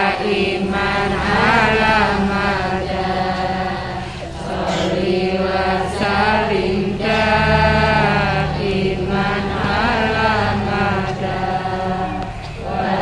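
Sholawat, an Islamic devotional song, sung in long held notes that waver and turn, with short breaths between phrases, over a steady low accompaniment.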